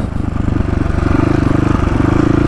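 A 450 single-cylinder supermoto motorcycle engine running steadily at low revs, with its even firing pulse, as the bike rolls slowly along a dirt road.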